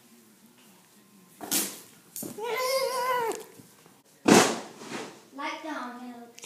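A child's voice making a long, wavering, drawn-out cry, with a shorter vocal sound near the end. A sudden, loud rush of noise comes about four seconds in.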